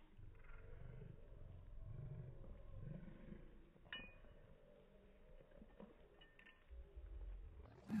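Faint low grumbling from a dog while another dog licks its ear, with a light clink about four seconds in.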